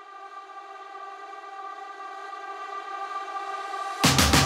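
A single held synthesizer note, steady in pitch and without a beat, swelling gradually louder as the intro of an electronic track.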